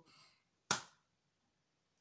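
A single sharp hand clap, about two-thirds of a second in, dying away within a third of a second; the rest is silent.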